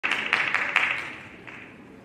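Audience applause, fading out over the first second and a half.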